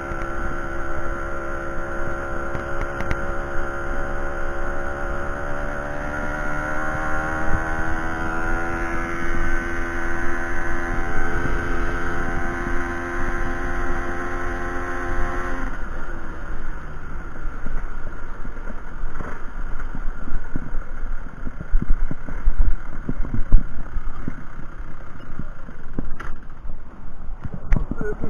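Small two-stroke engine of a 1992 Aprilia Classic 50 moped running under way, its note rising slightly as it picks up speed. About halfway through the engine note drops away suddenly, leaving wind noise and road rumble.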